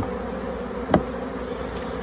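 Honeybees buzzing around an open hive box, a steady hum, with one short louder sound about a second in.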